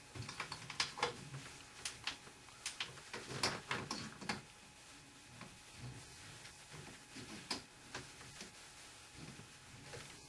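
Irregular light clicks and taps, many in quick succession over the first four seconds or so, then sparser and fainter: handling noise from an inspection camera's cable and probe being worked up through a ceiling light-fixture opening.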